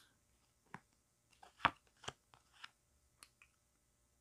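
Tarot cards being drawn and handled: a few faint, short snaps and flicks of card stock, the sharpest about a second and a half in.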